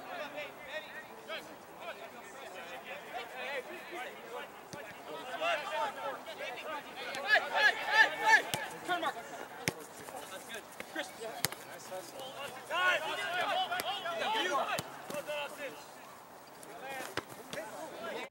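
Players on a soccer pitch shouting to one another, unintelligibly, during match play. The shouting is loudest about halfway through and again near the end, and a few sharp thuds of the ball being struck are heard.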